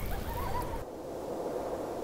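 An owl hooting, a steady low call over a quiet ambient bed.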